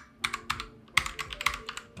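Typing on a computer keyboard: a quick, uneven run of keystrokes.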